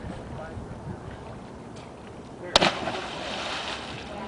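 River water splashing close by: a sudden sharp splash about two and a half seconds in, followed by a second or so of spraying, sloshing water noise.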